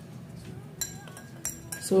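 Metal spoon clinking against a drinking glass three times, light sharp clinks with a brief ring, as honey is added to the drink.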